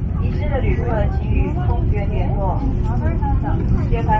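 Inside a parked airliner's cabin: a steady low rumble of cabin noise, with other passengers' voices talking over it.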